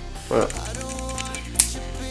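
A single sharp snap about a second and a half in, from a thin 3D-printed PLA bridge of a temperature tower breaking under finger pressure, over steady background music.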